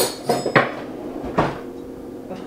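Metal cutlery clattering and clinking in a kitchen drawer's cutlery tray as utensils are taken out: a loud clatter at the start, another about half a second in, and a single clink a little past the middle.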